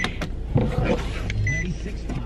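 A car's engine idling, heard inside the cabin as a steady low hum. A short, high electronic chime beeps at the start and again about a second and a half later.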